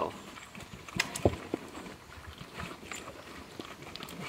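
Pigs eating grain from a wooden feeder: scattered short chomps and knocks, the loudest a little over a second in.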